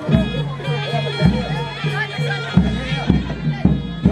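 Jaranan/reog music: a shrill double-reed slompret (East Javanese trumpet) playing a wavering melody over repeated low pitched beats and drum strokes.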